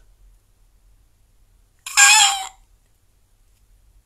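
A single short, high-pitched call about two seconds in, lasting under a second.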